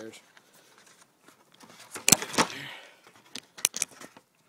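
Cardboard boxes and gasket packaging handled right against the microphone: a loud rustle about two seconds in, then a few sharp clicks near the end.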